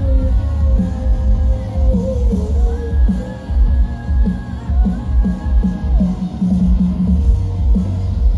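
Live pop-punk band playing at concert volume: drums keeping a steady beat under electric guitars, with sung vocals holding long notes. Heard from within the crowd.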